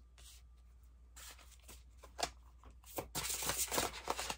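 Tarot cards being handled and shuffled: a few faint slides and clicks, then a quick run of rapid card flicks in the last second.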